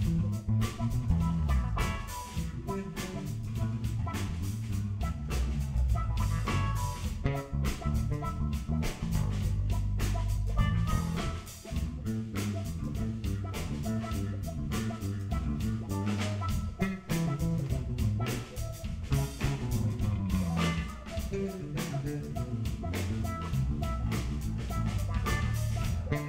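Live funk jam: electric bass guitars playing busy, shifting bass lines over a steady drum-kit beat.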